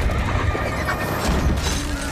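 Battle scene soundtrack with horses whinnying over a dense din of battle noise, with music underneath.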